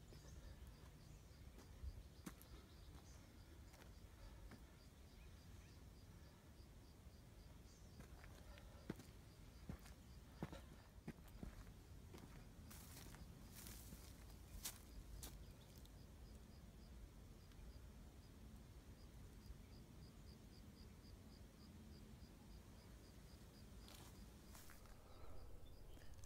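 Near silence: faint open-air ambience, with an insect chirping faintly in a steady rapid pulse and a few soft clicks.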